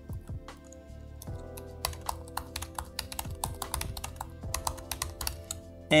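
Computer keyboard typing, a run of keystroke clicks that are sparse at first and come faster from about a second in. Steady background music plays underneath.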